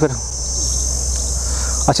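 Steady, high-pitched drone of insects, with a low rumble underneath.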